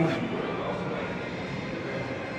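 Steady drone of ventilation in a large room, even and unchanging, with the tail of a man's word just at the start.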